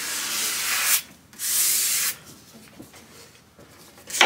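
Hand sanding of a wooden guitar body's edge with a sanding block: two strokes of rasping hiss, the first about a second long and the second shorter after a brief pause, then only light handling noise.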